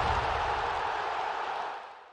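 A steady rushing noise that fades out gradually, dying away near the end.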